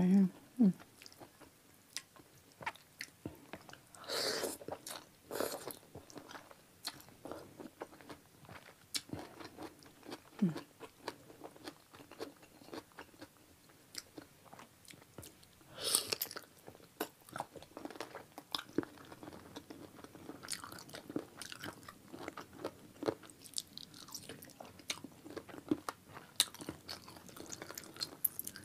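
Close-up mouth sounds of chewing cooked chicken feet: many small wet clicks and chewing noises, with a few louder bursts about four, five and sixteen seconds in.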